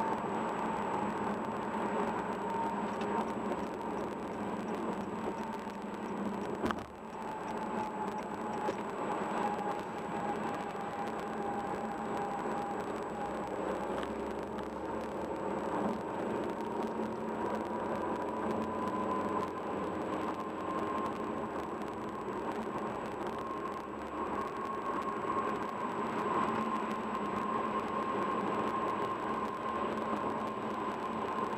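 Steady road and tyre noise with engine hum, heard from inside a car's cabin cruising on a freeway, with a thin tone that drifts slowly in pitch. A brief click about seven seconds in.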